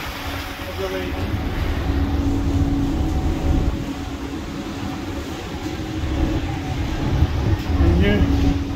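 Ferry running, with a steady low engine hum under a rough, fluctuating rumble of wind on the microphone.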